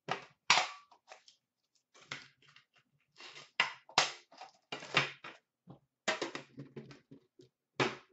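A cardboard hockey card box and its foil packs handled on a glass countertop: a string of sharp taps, knocks and scuffs as the box is opened and the packs are pulled out and set down on the glass.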